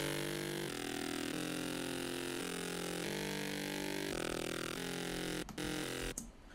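A stack of layered Xfer Serum synthesizer patches playing sustained chords that change about every second, with a shimmering upper layer. A short sharp hit comes about five and a half seconds in.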